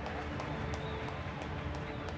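Low background music playing under the steady hubbub of a large indoor hall, with a few faint sharp clicks.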